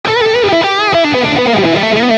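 Electric guitar playing a fast melodic shred lick in a rock/metal style: single picked notes, with vibrato on the held notes in the first second, then a quick run stepping down in pitch.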